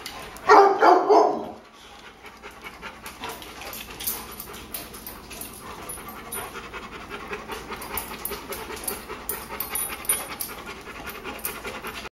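Several dogs panting rapidly, with claws clicking on a tile floor as they move about. A short, loud pitched outburst from a dog comes about half a second in.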